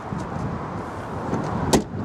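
Tailgate of a Nissan Micra hatchback being shut, latching with a single thump near the end.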